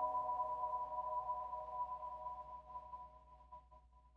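The last chime of a mallet-percussion logo jingle rings on as a few held tones. It fades away steadily, nearly gone by the end.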